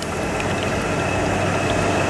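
Boat engine idling: a steady low hum with a faint, even high whine over it.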